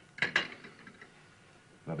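Brief clatter of china and cutlery, two quick clinks close together.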